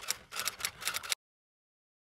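Typing sound effect: a quick run of key clicks, about seven a second, that cuts off suddenly a little over a second in.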